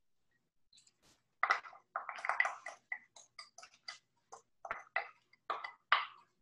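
Wooden spoon tossing chopped salad in a glass bowl: irregular scrapes and light clicks of the spoon against the glass, starting about a second and a half in.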